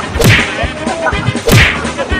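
Two whip-crack sound effects, about a second and a quarter apart, punctuating a slapstick fight, over background music with a steady low beat.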